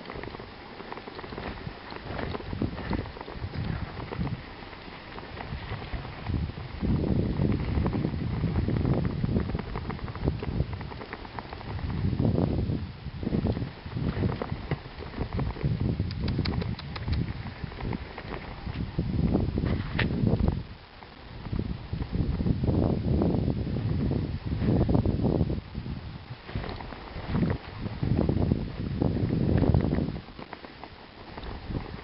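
A team of four Alaskan malamutes running in harness over snow: a continuous patter and crunch of paws and the rig moving through snow, with surging low rumble from wind on the microphone.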